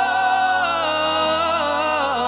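All-male a cappella group singing a held chord without words. About half a second in, the top voice slides down and then runs on in a wavering, vibrato-laden line over the sustained backing voices.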